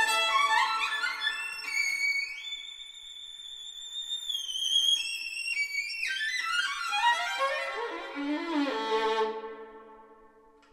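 Solo violin playing a fast rising run up to a long, high held note, then quick runs down and back up, settling on a lower held note that fades away near the end.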